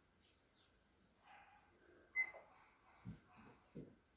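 Mostly quiet, with faint sounds of a person shifting into a push-up position on the floor: a brief high squeak about two seconds in and two soft low thumps near the end.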